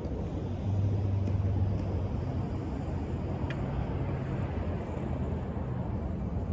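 Low engine rumble of a passing vehicle, swelling about a second in and easing off a few seconds later.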